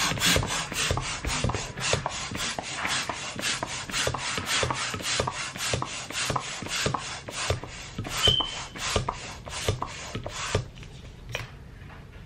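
Hand balloon pump worked in quick, even strokes, about three a second, each stroke a rasping rush of air into a latex balloon. The pumping stops about ten and a half seconds in, and a brief high squeak comes about eight seconds in.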